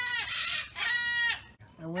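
Chickens calling for food at feeding time: two drawn-out calls, the first rising and falling in pitch, the second steadier. A woman's voice starts near the end.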